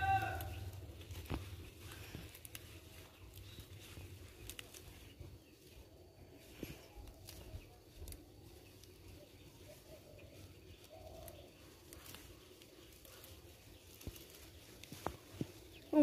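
Leaves rustling and stems snapping as leafy greens are pulled up by hand, a few faint sharp clicks scattered through, with a voice briefly at the very start.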